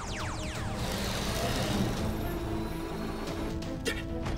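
Cartoon soundtrack music under a synthesized radar-scan effect: a run of falling electronic sweeps that stops about a second in, then a whoosh, with a couple of sharp clicks near the end.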